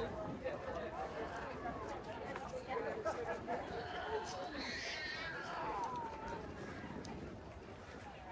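Background chatter of passers-by talking, with no single voice clear. A higher-pitched voice stands out briefly about halfway through.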